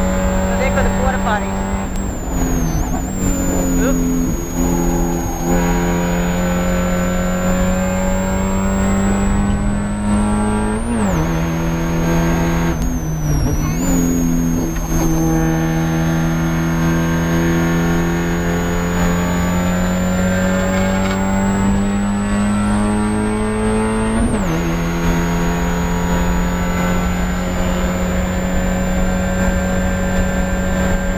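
Spec Miata's four-cylinder engine heard from inside the cabin at sustained high revs on track. Its pitch climbs slowly and falls sharply twice, about eleven and twenty-four seconds in, with briefer dips near the start and around thirteen seconds.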